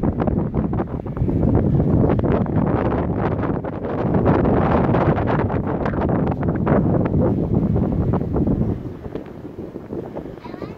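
Wind buffeting the microphone in loud, uneven gusts, easing off about nine seconds in.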